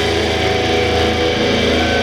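Live rock band's electric guitars and bass holding a loud, steady distorted chord, with a low hum under it and no drums.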